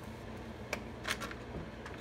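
A few light plastic clicks as the orange top cover of a Stihl MS 261 chainsaw is worked loose and lifted off, two small clicks about a second in.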